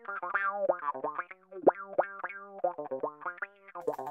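Electric bass played through a Carl Martin Classic Optical Envelope filter: a quick run of short plucked notes, about three or four a second. Each note opens with a fast upward filter sweep, giving a funky wah sound.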